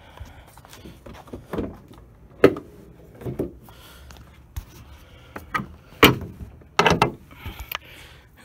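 The hood of a 2015 Ford Focus being opened: a series of clicks and metallic clunks as the hood latch is released and the hood is raised, the loudest knocks about two and a half and six seconds in.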